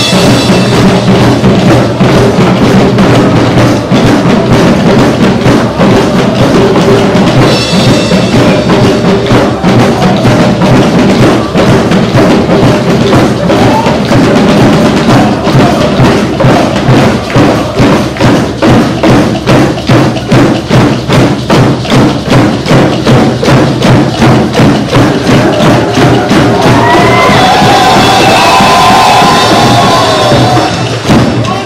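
Drum-circle percussion music: a group of drums beaten with sticks in a steady, driving rhythm, with cymbal.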